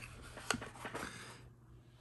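A flathead screwdriver working between a hard drive and its plastic enclosure: one sharp click about half a second in, then a few fainter ticks and light scraping.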